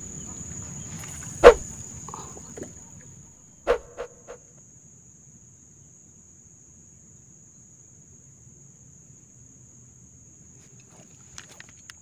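Insects keep up a steady high-pitched drone. A single sharp, loud knock comes about a second and a half in, then a few softer knocks around four seconds.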